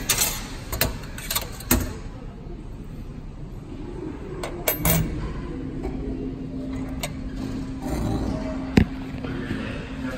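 Minute Key self-service key-cutting kiosk at work: several sharp clicks and clinks in the first couple of seconds, a few more scattered later, then a steady low hum from about halfway through as the machine runs to cut the next key.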